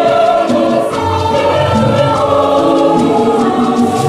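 Mixed church choir singing an Igbo gospel hymn in parts, holding sustained notes that change pitch every half second or so. A steady percussive beat ticks along underneath.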